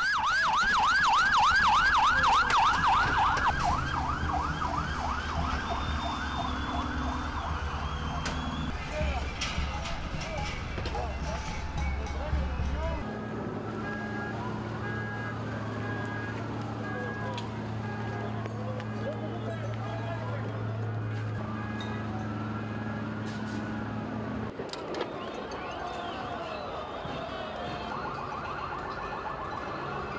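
Police vehicle sirens. A fast yelp is loudest over the first few seconds, then several slower wails rise and fall across each other. A steady low hum runs through the middle, there are scattered sharp knocks, and the fast yelp comes back near the end.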